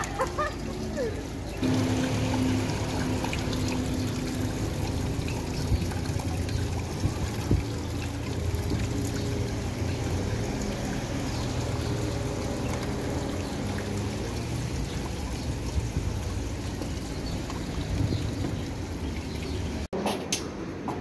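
Water trickling and splashing down the rock face of a small grotto fountain. Background music of long held notes comes in about two seconds in.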